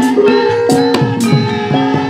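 Javanese gamelan music accompanying the dance: struck metallophone notes stepping through a melody over regular hand-drum (kendang) strokes.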